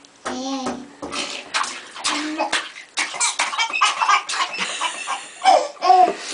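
Baby laughing briefly, then bathwater splashing in quick repeated slaps for several seconds as babies play in the tub, with another loud baby squeal near the end.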